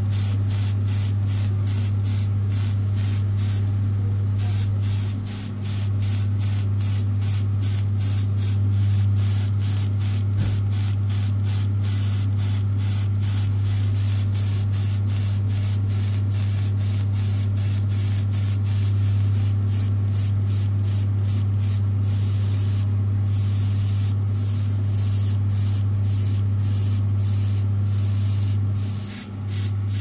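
Paint spray hissing steadily onto small silver-painted model parts, the hiss pulsing about three times a second and stopping briefly twice. Under it runs a steady low hum.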